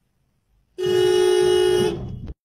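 A car horn sounds once, a single steady blast lasting about a second and starting near a second in.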